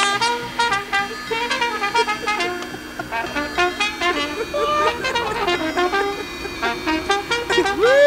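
A trumpet playing a lively tune of short, quickly changing notes.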